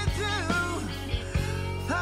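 Rock ballad music: a singer's voice over band accompaniment with a steady bass line.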